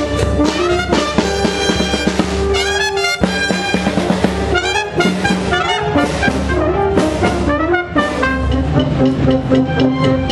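Brass band playing a tune with trumpets and trombones, with quick runs of notes about three and five seconds in.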